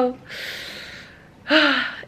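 A woman's long audible breath, fading away over about a second, then a short breathy, voiced "hah" with falling pitch about one and a half seconds in, as she grins.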